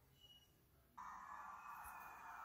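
Near silence, then about a second in a steady hum with a faint high whine sets in abruptly and carries on.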